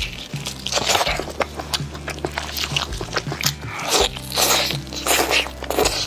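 Close-miked eating of a roast kiln chicken: biting into the seasoned skin and chewing, with repeated crunchy, wet bursts, over a low background music bed.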